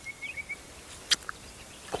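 A small bird gives a quick run of about six short, high chirps at the start, followed by a single sharp click about a second in, over quiet outdoor background.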